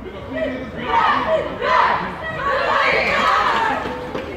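A women's football team shouting together in a huddle: a few loud group shouts from about a second in, then a longer cheer that fades just before the end.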